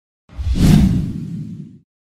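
A single whoosh sound effect with a heavy low end, swelling quickly about a third of a second in and fading away over about a second.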